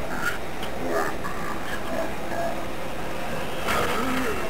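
Sped-up cartoon soundtrack played through a television speaker: fast, garbled voices mixed with sound effects.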